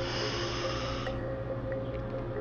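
A single audible breath in, a soft airy hiss lasting about a second, taken on the cue to inhale. Soft ambient music with steady held tones plays under it.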